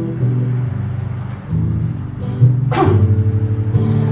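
Steel-string acoustic guitar played live, with sustained chords that change every second or so. A brief falling squeak cuts across it about two-thirds of the way through.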